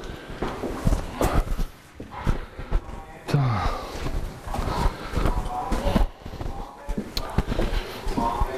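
Footsteps of a man walking, with indistinct talking in the background and a short falling vocal sound a little over three seconds in.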